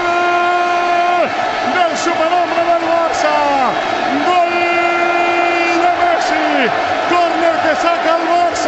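A radio football commentator's voice in long held shouts, each note held level for a second or more and then falling away at the end: a drawn-out celebration of a goal.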